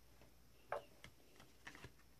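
Near silence with a few faint, light clicks and taps, the clearest a little under a second in and two more close together near the end, from a plastic scraper card being handled against a metal nail stamping plate.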